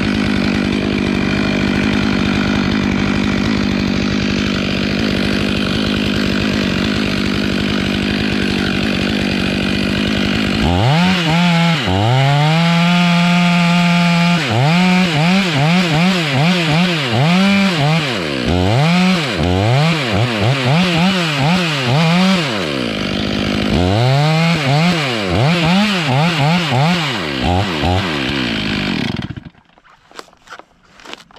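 Stihl two-stroke chainsaw cutting into the base of a big redwood. For about the first ten seconds it runs at a steady full-throttle pitch under load; after that the engine note rises and falls roughly once a second as the bar is worked in the cut, until the saw drops off near the end.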